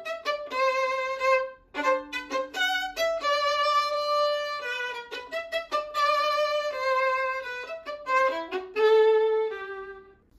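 Solo violin, unaccompanied, bowing the opening phrase of a balada in a happy character: runs of short notes between longer held ones, with a brief break about two seconds in and a held note near the end.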